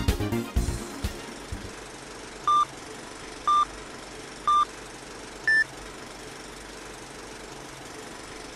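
Background music ends about a second in, then a film-leader countdown sound effect: three short beeps a second apart, then a fourth, higher beep, over a steady low background noise.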